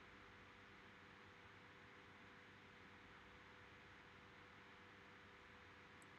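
Near silence: faint steady microphone hiss and low hum of room tone.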